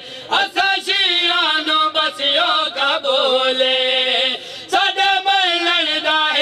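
A group of men chanting a devotional song together in unison, voices only with no instruments. There are brief breaks for breath right at the start and about four and a half seconds in.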